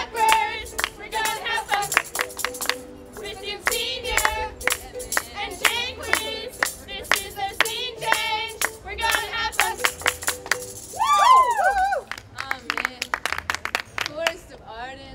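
A song with singing over a steady beat of sharp percussive hits and a held note underneath. A few sliding vocal glides come about eleven seconds in.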